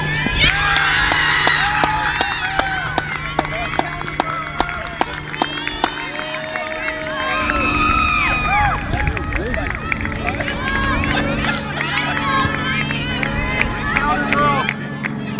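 Sideline spectators at a youth soccer match cheering and yelling over a goal, many high voices shouting at once with scattered claps. A steady low hum runs underneath for the first half and returns near the end.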